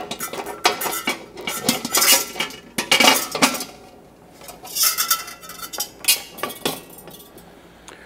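Stainless steel bowl of a commercial planetary mixer being seated on its bowl arms and the wire whisk fitted onto the beater shaft: a run of metal clanks, scrapes and clinks in clusters, with a short lull about four seconds in.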